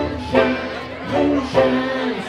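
Live bluegrass string band playing, a banjo picking over acoustic guitar, with a man singing.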